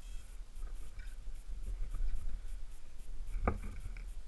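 Mountain bike rolling over a rough, rocky trail: a steady low rumble with scratchy tyre and rattle noise, and one sharp knock about three and a half seconds in.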